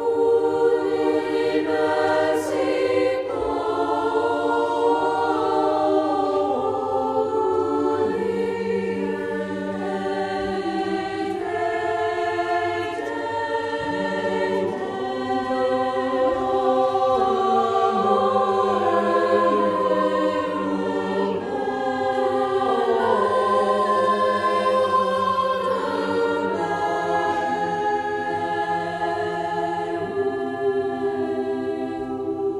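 Mixed choir of women's and men's voices singing slow, sustained chords, each held a second or two before moving to the next.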